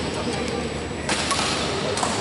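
Badminton shuttlecock being struck by rackets during a rally: a few sharp hits, the loudest about a second in.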